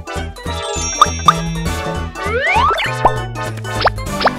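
Upbeat children's background music with a pulsing bass line and bell-like chime notes, overlaid with cartoon sound effects: several quick rising pitch glides, like boings or slide-whistle swoops, in the second half.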